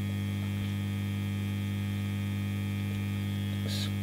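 Steady electrical mains hum from a guitar amplifier and pedal rig: a low, unchanging buzz with several overtones. A brief faint scratch comes near the end.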